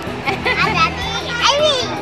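Children's voices chattering in a crowd, over steady background music.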